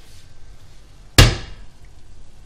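A single sharp knock about a second in, with a short ringing tail, as a kitchen knife strikes while chopping a piece of halušky potato dough off a plastic board into the pot.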